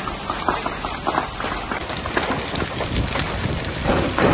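Steady rushing hiss with many small crackles and pops throughout, from a fire hose's water jet playing on a burning wooden house.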